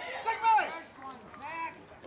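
Raised voices calling out across a baseball field, with no clear words: one loud shout about half a second in and a shorter call a second later.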